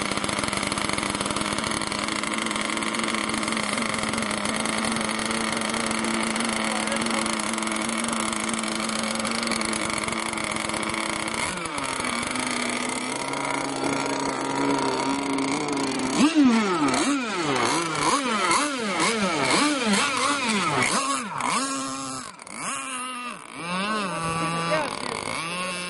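Small engine of a radio-controlled hydroplane running steadily at idle, then dropping in pitch, then from about two-thirds of the way in revving up and down again and again as the throttle is worked and the boat takes to the water.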